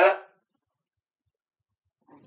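A man's loud, short burst of laughter at the very start, its pitch sliding.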